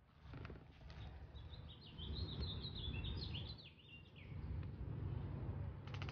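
A songbird singing a quick run of short high chirps that step downward in pitch, starting about a second and a half in and ending around four seconds in, over a steady low rumble.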